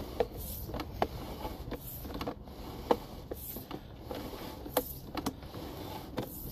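Sewer inspection camera's push cable being pulled back out of the line and fed onto its reel: a steady low rumble with irregular sharp clicks and ticks, a few of them louder.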